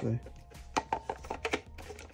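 Hard plastic knocks and clicks, several quick ones in about a second, as two Funko Pop vinyl skiff display bases are pushed and fitted against each other. The pieces do not lock together.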